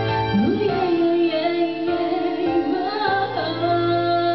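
Female solo voice singing live into a microphone, gliding up into a long held note about a third of a second in, its pitch wavering, over sustained electric keyboard chords.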